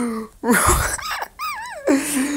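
A person laughing in high, breathy squeals: a gasping burst about half a second in, then wavering, high-pitched cries near the end.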